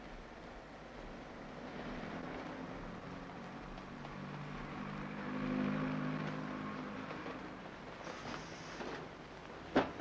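Garbage truck engine running in street traffic, growing louder to a peak about halfway through and then fading, with a brief hiss near the end.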